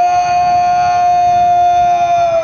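A parade drill command shouted in a long, drawn-out call, its vowel held loud and steady at a high pitch.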